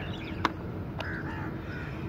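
Birds calling, faint crow-like calls, with a sharp click about half a second in and another a second in.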